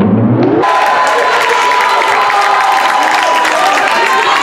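Muffled, slowed-down replay sound that gives way within the first second to the live sound of a school gym: a crowd of spectators cheering and shouting, with many voices at once.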